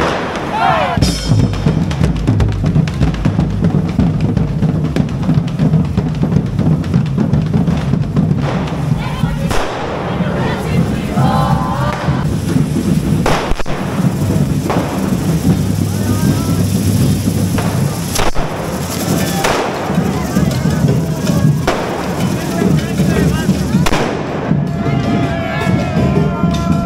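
Batucada street drumming, snare drums and bass drums keeping a driving rhythm, mixed with the hiss and crackle of hand-held spark fireworks spraying from devils' fire forks.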